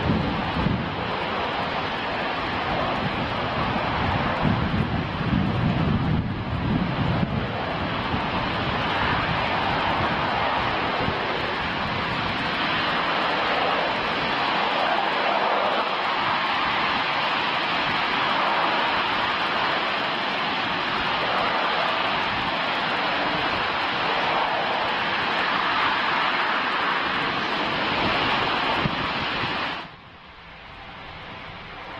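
RS-25 liquid-hydrogen/liquid-oxygen rocket engine firing on a test stand: a loud, steady rushing noise. It cuts off suddenly near the end as the engine shuts down at the close of the hot-fire test.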